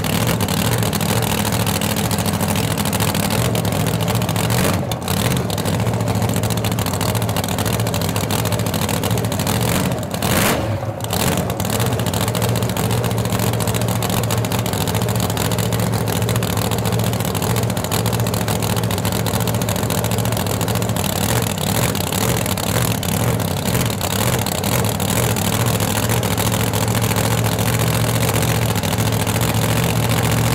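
Boosted V8 engine of a Mustang-bodied outlaw drag car idling loudly and steadily.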